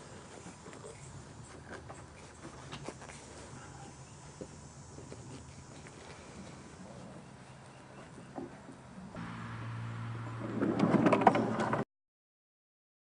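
Faint clicks and rubbing of PVC pipe track sections being handled on grass. Near the end, a louder steady rolling rumble as a homemade camera dolly runs on skateboard wheels along PVC pipe rails, cutting off suddenly.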